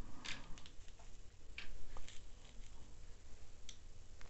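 Tarot cards being nudged and straightened by hand on a cloth-covered table: a few soft clicks and brushing sounds scattered through, with pauses between them.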